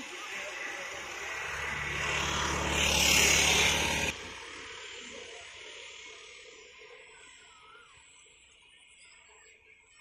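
A motor vehicle passing close by, its engine hum and road noise growing louder over about three seconds, then cut off suddenly about four seconds in. A faint high steady tone remains after it.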